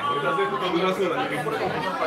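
Men's voices talking indistinctly, with overlapping chatter of a busy restaurant dining room.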